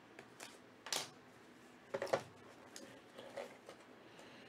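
Small box cutter slitting the tape seal on a cardboard trading-card box, then the box being handled: soft scrapes and clicks, the loudest about one and two seconds in.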